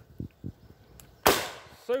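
An Eternal Rev .410 five-shot revolving shotgun fired once double action: a single sharp report about a second in that dies away over about half a second. A few faint clicks come before it as the heavy trigger is squeezed.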